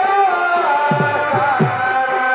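Chhau dance music: a reed pipe carries a held, wavering melody over deep drum strokes that drop in pitch, a few strokes in the two seconds.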